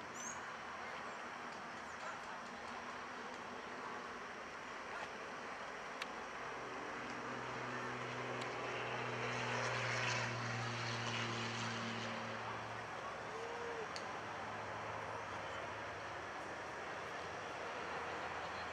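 A distant engine drone over steady outdoor background noise. It swells in the middle, loudest about ten seconds in, then fades away.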